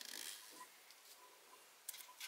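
Faint rustling of a sheet of printer paper under a hand, then a few short crisp paper crackles near the end as the folded sheet is opened.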